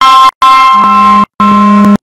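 Loud electronic tones in three blasts, the middle one the longest. Each blast holds a steady chord of several pitches, and a lower note joins in during the second and third.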